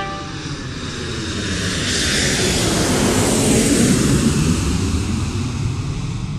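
Airliner cabin noise, a steady rumble and hiss of the jet engines and airflow that swells louder about halfway through.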